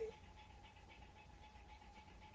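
Near silence: a pause in speech with faint background hiss and a faint steady tone.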